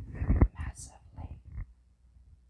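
A woman whispering, with a sharp click about half a second in and a breathy hiss just after it.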